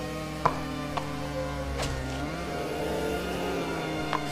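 Background music of held, droning tones that change chord about two seconds in, with a few short sharp clicks over it, the loudest about half a second in.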